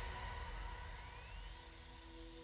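Electronic background music in a quiet breakdown: the beat has dropped out, leaving held tones and thin rising sweeps as the level sinks.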